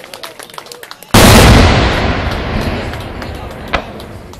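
A large firework goes off with a single very loud bang about a second in, its boom echoing and fading away over the next two seconds. Light crackling comes before it and one sharp pop near the end.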